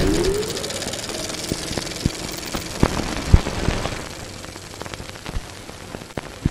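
Sound effects of an animated logo sting: a rising whoosh over a crackling, fizzing texture, with scattered sharp clicks, the loudest about three seconds in, dying away over the last two seconds.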